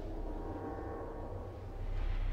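Faint background music holding a soft sustained chord, fading away near the end, over a steady low hum.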